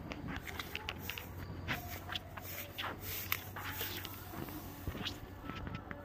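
Footsteps crunching through dry grass with phone handling noise: a string of light, irregular crunches and clicks over a low steady hum.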